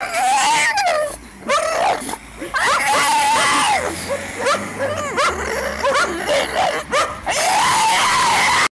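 A small black-and-white dog howling in a string of wavering notes that rise and fall in pitch.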